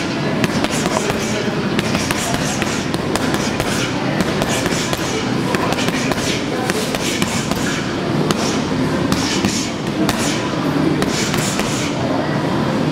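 Boxing gloves landing on a heavy punching bag in quick, irregular punches, over a steady hubbub of gym noise and voices.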